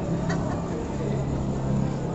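A motor engine running steadily with a low, even hum, with one light click about a third of a second in.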